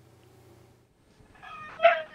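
A single animal cry that builds over about half a second, peaks loudly near the end, and then trails off falling in pitch.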